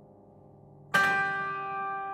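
Grand piano: a soft held chord dies away, then about a second in a loud chord is struck and left ringing, slowly fading.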